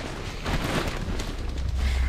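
Rustling and handling noise as a hand moves over the plastic wrapping of a new mattress, followed by a steady low rumble from about a second and a half in as the camera is moved.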